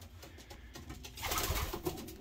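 Racing pigeons cooing in a loft, faint at first and louder from a little past halfway; the cocks are coming up into new breeding boxes to claim them.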